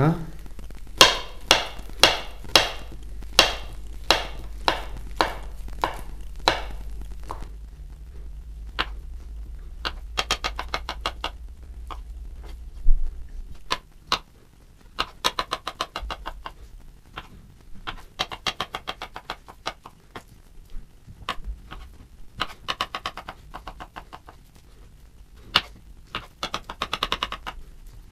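A ceramic-bladed kitchen knife slicing peeled bananas into small pieces, each cut ending in a tap on a bamboo cutting board: about two taps a second at first, then sparser, irregular taps and a few scrapes.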